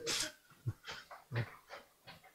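A few brief, faint breathy vocal sounds from a man close to a handheld microphone, spread through the pause.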